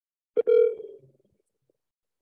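A click, then a single short electronic phone tone that fades away within about a second, as an outgoing phone call is placed.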